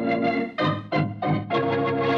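Organ music bridge: a held chord, then three short chords in quick succession, then another held chord.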